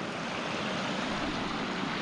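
Water rushing steadily over a beaver dam, spilling down a drop of about half a metre.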